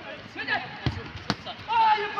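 A football kicked twice, two sharp thuds about a second in, among players' shouts, with a loud shout near the end.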